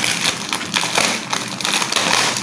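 Thin clear plastic bag crinkling and crackling as it is pulled and worked open by hand.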